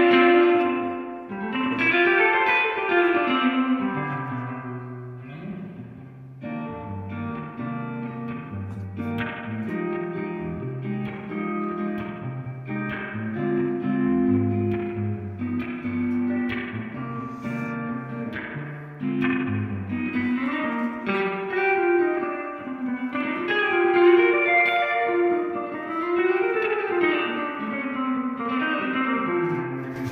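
Electric guitar played through a Subdecay Super Spring Theory pedal in spring-reverb mode, with the dry signal turned down so the spring reverb wash is to the fore. Chords and single notes ring on into the reverb, which sounds like a real amp's spring reverb.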